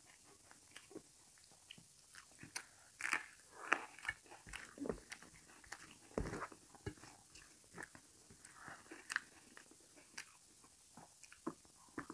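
Close-up mouth sounds of a person eating rice with potato masala curry by hand: wet chewing and smacking in irregular short clicks, busiest in the middle, along with fingers working the food on a steel plate.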